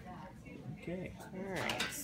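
A few light clinks and clicks of small objects being handled, mostly in the second half, with a soft voice under them.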